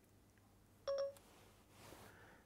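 iPhone 3GS Voice Control activation beep: one short electronic tone about a second in, the phone's signal that it is ready to listen for a spoken command.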